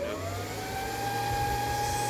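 Server power-supply cooling fan switched on: its whine rises in pitch as it spins up during the first second, then holds steady at full speed, clearly louder than the cooler's other fans.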